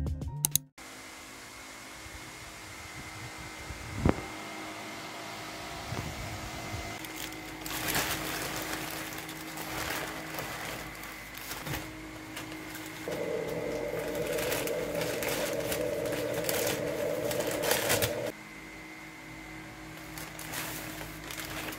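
Plastic poly mailer shipping bags crinkling and rustling in short bursts as they are handled and pulled open, over a faint steady room hum. A louder steady hum sets in for about five seconds in the middle, and background music cuts off right at the start.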